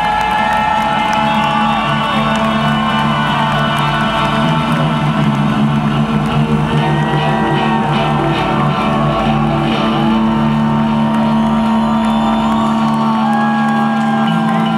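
A rock band's electric guitar and bass ring out in long held, droning notes as the song ends. Slow gliding tones rise and fall above them, and a crowd makes noise underneath.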